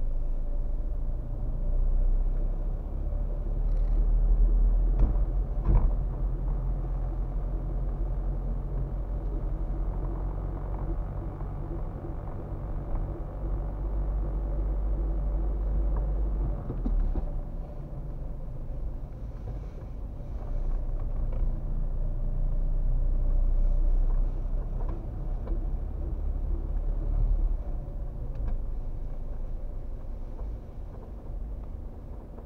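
A car's engine and tyre rumble heard from inside the cabin while it is driven slowly, deep and steady, swelling and easing with the driving. There are a couple of short knocks about five to six seconds in.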